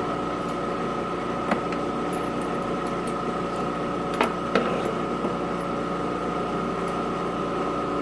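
Balzers HLT-160 dry helium leak detector running, a steady hum with a steady high tone from its pumps. A few sharp metal clicks sound in the middle, as the valve fitting is lifted off the vented test port.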